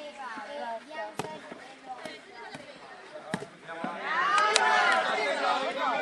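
A futsal ball kicked twice on an outdoor court, sharp thuds about a second in and again just past three seconds, over background chatter. From about four seconds in, loud shouting voices rise as a shot goes toward goal.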